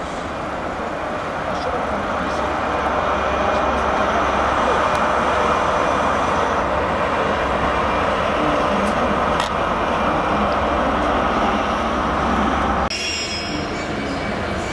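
High Speed Train moving out, its Class 43 diesel power car and coaches giving a steady rail noise that builds over the first few seconds. About a second before the end it changes suddenly to the sound of an approaching diesel freight train.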